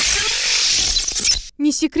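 Programme-transition sound effect: a loud, noisy hissing whoosh that fades and stops about a second and a half in, after a short musical sting. A voice-over starts speaking right at the end.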